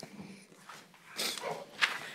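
Quiet room noise in a meeting room: a faint, brief murmur of voices and shuffling as people move in their seats, with a short knock near the end.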